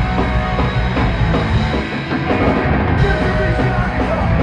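Live punk rock band playing loud on stage, drums driving, in an instrumental stretch with no vocals.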